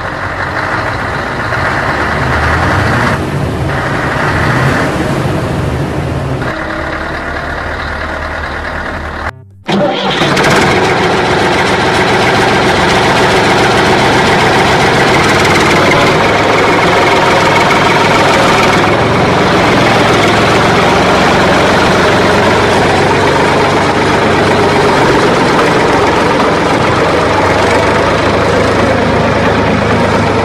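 A vehicle engine running steadily, cut off abruptly about nine seconds in, then running on at a slightly higher level.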